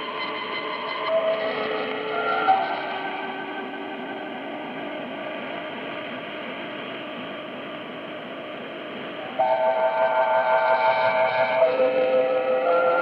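Music received over shortwave AM radio: held melody notes heard through band hiss and static. It grows louder and fuller about nine and a half seconds in, with several notes sounding together.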